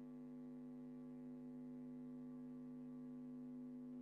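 Faint steady electrical hum, several even tones stacked together, unchanging throughout.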